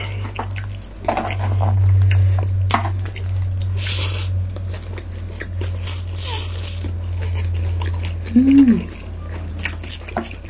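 Close-miked eating sounds: wet chewing and slurping of noodles and sushi, with several short slurps in the middle, over a low steady hum. A short hummed "mm" comes near the end.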